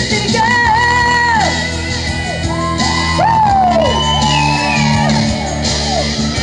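A woman singing a country song over guitar-led accompaniment, with long held notes that slide down at their ends.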